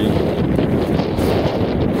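Wind blowing across the camera microphone, a steady low rumble.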